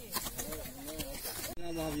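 Hoes chopping and scraping into grassy turf in short repeated strokes, under people's voices. A little past the middle the strokes stop abruptly and only voices go on.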